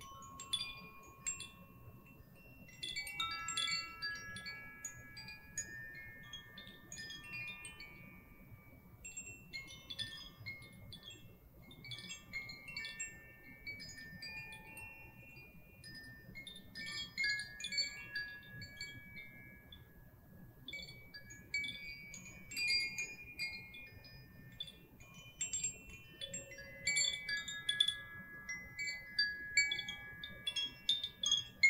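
Two hand-held cylindrical chimes, swung gently so their inner clappers strike the tuned rods. The result is an irregular, continuous cascade of bright tinkling notes that ring on and overlap.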